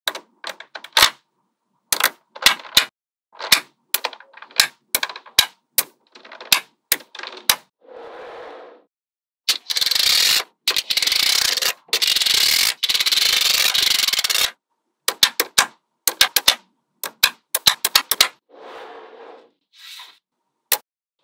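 Magnetic balls clicking sharply as they snap together, in quick irregular clicks. About ten seconds in comes some five seconds of loud continuous rasping rattle as a strip of balls is slid with a plastic card across a layer of balls. Then the clicking returns.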